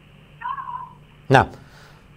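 Speech on a poor internet call: a short, faint, wavering tone on the call line about half a second in, then a man says one short word.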